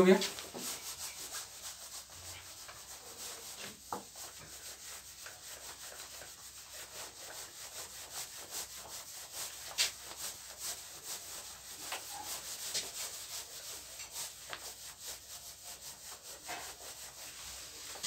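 A whiteboard duster rubbing back and forth across a whiteboard, wiping off marker writing in a continuous run of quick scrubbing strokes.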